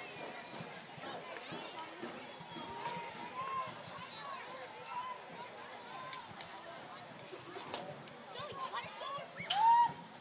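Faint, distant calls and shouts of players across an outdoor field, with a few sharp clicks. A louder rising shout comes near the end.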